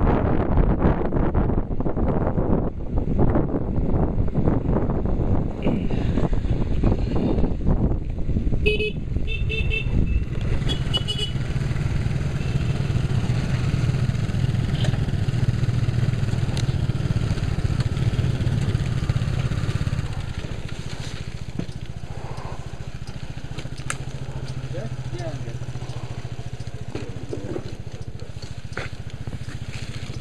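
Motor scooter engine running while riding on a wet road, with wind buffeting the helmet-mounted microphone for the first ten seconds or so; the scooter then slows and runs at a steady low hum, quieter from about twenty seconds in. A few short high beeps sound around ten seconds in.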